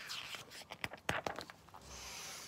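Paper pages of a picture book being handled and turned: light rustling, with a few sharp clicks near the middle.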